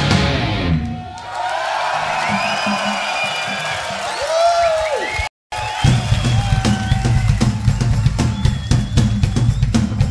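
Rock band playing live: the full band fades out about a second in, leaving a quieter stretch of high gliding tones between songs. About five seconds in, the sound cuts out for a split second, then a drum kit starts a steady, even beat that opens the next song.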